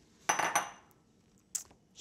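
An empty glass bowl set down on a stone countertop: one clink about a quarter second in that rings briefly. A fainter light tick of tableware follows near the end.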